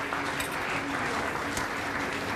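Busy restaurant kitchen noise: a dense, even crackling hiss, a faint low steady hum underneath, and a couple of sharp clinks of plates or utensils.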